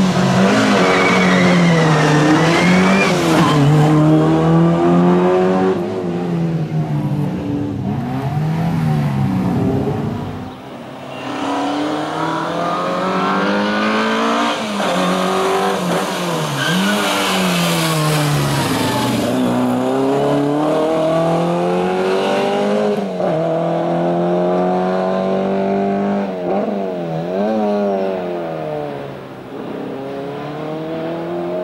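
A Group A Peugeot 205 rally car's engine driven hard through a slalom. The revs climb and drop sharply again and again as it accelerates, brakes and shifts between the cone chicanes, with a brief lull about ten seconds in.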